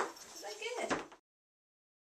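A sharp clack as a small wooden teeter board tips back onto the floor under a stepping dog, followed by a brief high voice; the sound cuts off suddenly about a second in.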